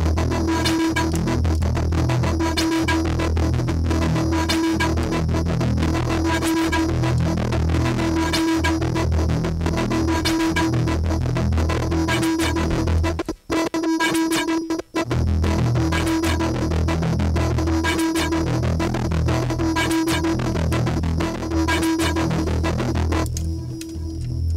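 Live techno played on a modular synthesizer rig: a steady kick-drum beat under a repeating synth tone and busy higher synth sounds. The music drops out twice, briefly, about halfway through, and near the end the upper sounds cut out, leaving the bass.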